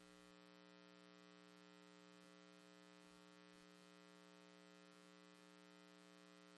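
Near silence: a faint, steady electrical hum made of several even tones, with a light hiss of static.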